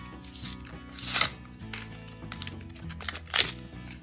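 Background music, over which a plastic-and-cardboard blister pack holding an EOS lip balm is crinkled and pulled open by hand, with two sharper crackles about a second in and near the end.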